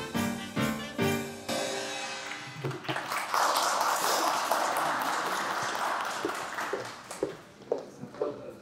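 A live wind band with drums plays the last rhythmic bars of a dance tune, stopping about a second and a half in. After a short pause the audience applauds for a few seconds, the clapping thinning to a few scattered claps near the end.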